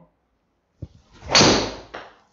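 A golf driver strikes a ball indoors, and the ball flies into a hitting screen: one loud, sharp hit about a second and a half in that dies away quickly in the room, after a faint click.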